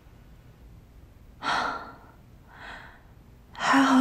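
A woman's breathy sigh about a second and a half in, then a fainter breath, then a louder sigh with a little voice in it near the end that runs into her words. These are sighs of relief on waking from a bad dream.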